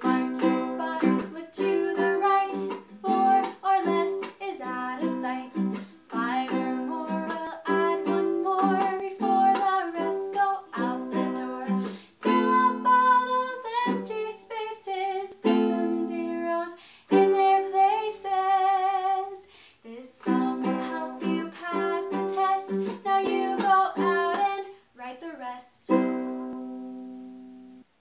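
A woman singing while strumming a ukulele, her voice over steady chord strums. Near the end a last strummed chord rings out and fades.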